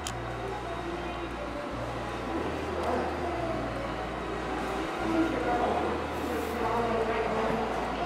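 Indoor hall ambience: a steady mechanical rumble with faint, indistinct voices of other people coming and going.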